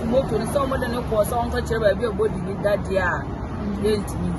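A woman talking over steady outdoor street background noise of traffic and people's chatter.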